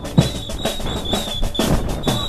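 Drums and percussion playing a busy beat, several sharp hits a second.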